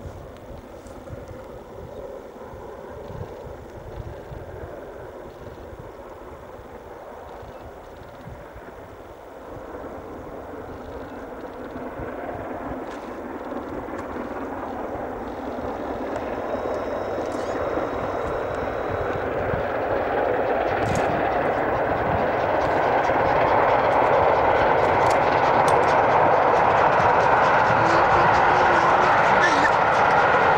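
LMS Princess Royal class 4-6-2 steam locomotive 46203 Princess Margaret Rose working a passenger train, its exhaust and the train's running sound growing steadily louder as it approaches. Wind buffets the microphone in the first part.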